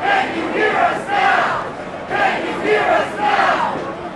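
A crowd of protesters chanting a short slogan together, the phrase coming round again and again about once a second.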